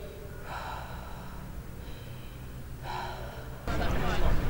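Two slow, heavy breaths from the silent caller on the phone, about two and a half seconds apart, over a low steady hum.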